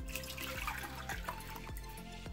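Water poured from a small glass bowl into a large glass mixing bowl, splashing and trickling onto the glass.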